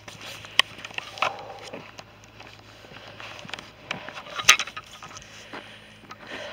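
Faint outdoor background with scattered irregular clicks and knocks from a handheld camera being moved while walking; the loudest knock comes about four and a half seconds in.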